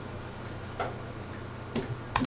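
Two faint clicks, about a second apart, over a steady low hum of room tone.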